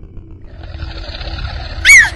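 A low rumbling, hissing swell builds louder for over a second, then a woman's short, piercing scream rises and falls near the end and is the loudest sound.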